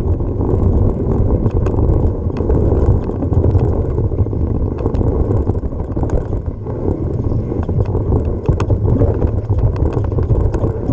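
Wind rumbling on the handlebar camera's microphone, mixed with tyre noise and rattling from a mountain bike descending a dry dirt and gravel trail. Frequent sharp clicks and knocks from the bike and stones run through it.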